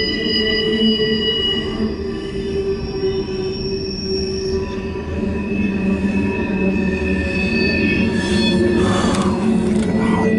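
Wheels of a CSX mixed freight train squealing as the cars roll through the curve of a wye, over a low rumble of passing cars. Several steady high squeal tones hold through the first half, and a louder squeal slides in pitch about nine seconds in.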